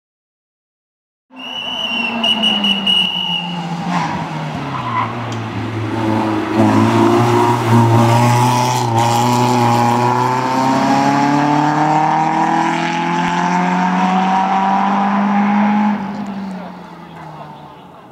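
A Peugeot 106 rally car's engine at high revs, accelerating hard and climbing in pitch as it passes, then fading as it drives away near the end. A brief high-pitched squeal sounds about two seconds in.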